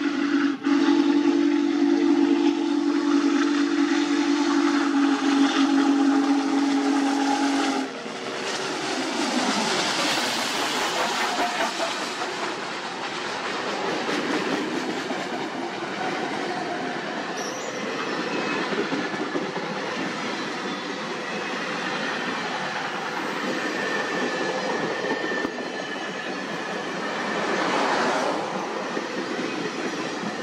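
Union Pacific Big Boy 4014 steam locomotive's whistle sounding one long, steady, loud blast that cuts off sharply about eight seconds in. The train then runs past close by: the locomotive, a diesel unit and a string of passenger cars, with steady wheel-on-rail noise.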